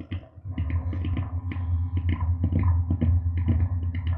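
Self-generating noise drone from a chain of effects pedals: a steady deep bass drone with irregular crackling clicks over it, its low end pushed through a PD7 Phat-Hed bass overdrive. It grows louder about half a second in.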